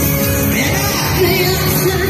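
Loud live music over a PA system with a woman singing into a microphone.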